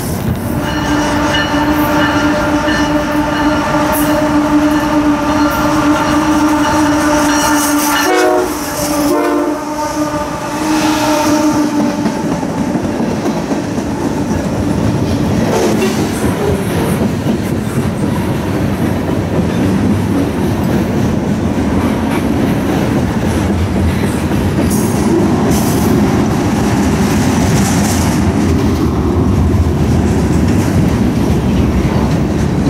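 Freight locomotive's multi-chime air horn: a long blast, a short one about eight seconds in, then another long one that ends about twelve seconds in. After it comes the steady rumble and clickety-clack of a freight train's wheels passing on the rails.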